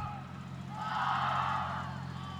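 Faint, distant voices of players and spectators on a field hockey pitch, swelling briefly in the middle, over a steady low electrical hum.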